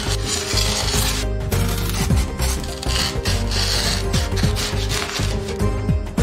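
Snap-off utility knife blade sawing through thick blue polystyrene foam board: a scratchy rubbing, rasping sound in uneven strokes, with a short break about a second in.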